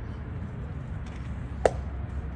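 A pitched baseball popping into the catcher's leather mitt: one sharp pop near the end, over steady outdoor background noise.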